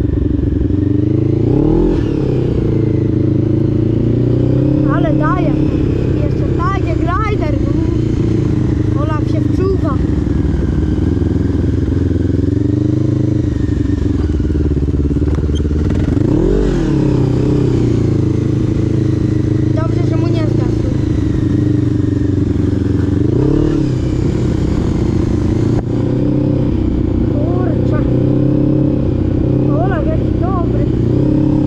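Quad bike engine running continuously as it is ridden, its pitch rising and falling with the throttle, with a few short, higher-pitched wavering sounds at several moments.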